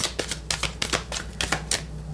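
A deck of oracle cards being shuffled in the hand: a rapid run of light card clicks, several a second.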